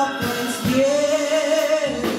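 A woman singing a gospel solo into a handheld microphone, holding one long note through the second half.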